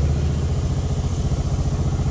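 2011 Mokai motorized kayak's engine running steadily, a low, fast, even pulse.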